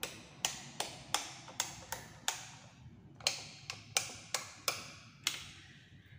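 Sharp taps or knocks, about three a second, each with a short ringing decay, in two runs separated by a pause of about a second.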